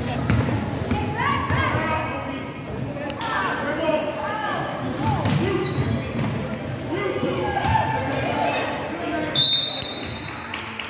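Basketball dribbling on a hardwood gym floor, with players' and spectators' voices echoing in a large hall. A brief high-pitched tone sounds near the end.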